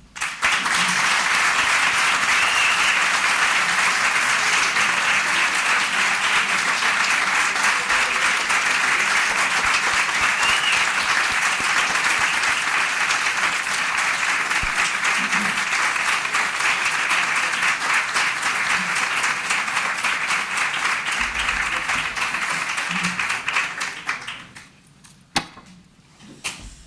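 Audience applauding, starting suddenly and running steadily until it dies away near the end.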